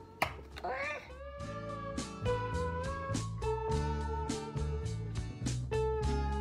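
Background music coming in about a second in: a held melody line over changing bass notes and a steady beat.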